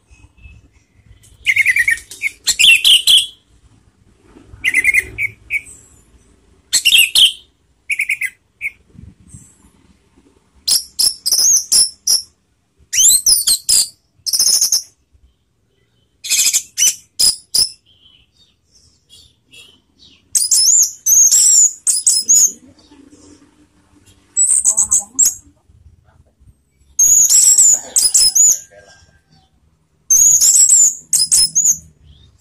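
Orange-headed thrush (anis merah) in full 'teler' song: loud, varied, high-pitched phrases of about a second each, repeated every second or two with short pauses.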